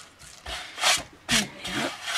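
A hand brushing paper and sanding debris off a craft cutting mat in a few short rubbing strokes.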